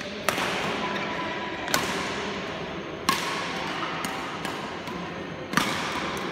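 Badminton rackets hitting a shuttlecock in a rally: four sharp cracks, roughly one and a half to two and a half seconds apart, with a few softer taps between. The strikes echo in a large hall.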